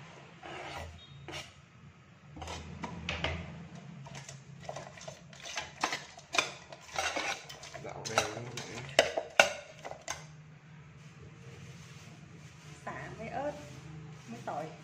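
Slotted metal ladle clinking and scraping against a stainless steel pot as chicken feet are tossed with seasonings: a run of sharp, uneven clinks over the first ten seconds, then quieter.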